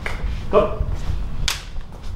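A single sharp snap about one and a half seconds in, after one short spoken word.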